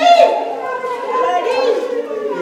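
People's voices talking, several overlapping.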